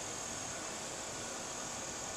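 Steady outdoor background hiss with a continuous high-pitched insect trill from crickets.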